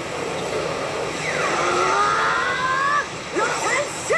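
Anime battle soundtrack: a dense, steady rushing roar of effects, with a long pitched cry sliding slowly upward through the middle and short shouted voice syllables near the end.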